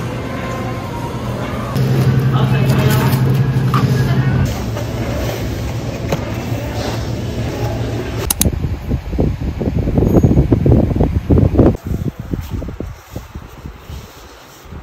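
Supermarket ambience: a steady low hum with indistinct voices in the background, the level stepping up and down at cuts. From about eight seconds in there is a sharp click followed by uneven low rumbling and knocks close to the microphone.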